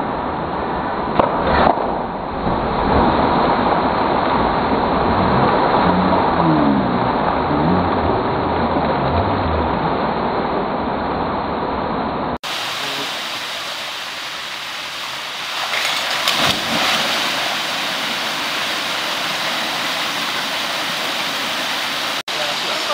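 Steady rush of a mountain stream and waterfall pouring into a plunge pool, with a few sharp knocks and splashes early on. The rush changes tone about halfway through, becoming a more even, hissing waterfall roar.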